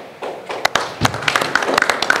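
Scattered hand clapping from a small audience, starting about half a second in as a run of irregular sharp claps, with a dull thud about a second in.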